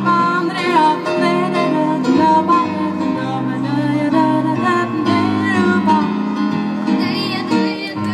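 A woman and a girl singing a duet into a microphone, amplified through a PA speaker, over an instrumental accompaniment.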